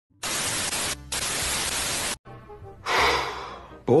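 Television static hiss, loud and steady for about two seconds with a brief dip about a second in, then cutting off sharply. A short rushing swell follows and fades away.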